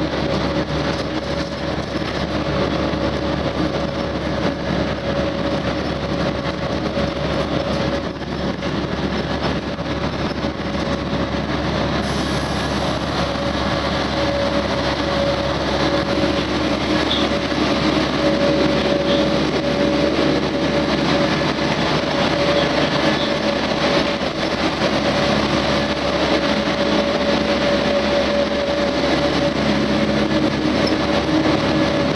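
Steady engine and road noise inside a moving city bus, with a constant tone running through it; it grows slightly louder about halfway through.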